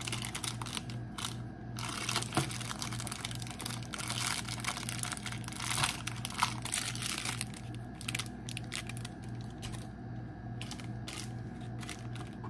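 Clear plastic wrapper crinkling and rustling in irregular bursts as it is folded by hand around a small glass diffuser bottle.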